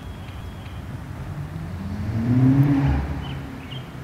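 A motor vehicle passing by, its engine and road sound swelling to a peak about two and a half seconds in and then fading.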